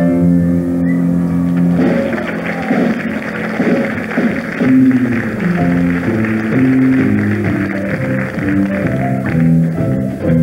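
Pit orchestra playing dance music for a stage musical, with notes held and changing steadily, and a hiss of higher noise over the music from about two seconds in until just before the end.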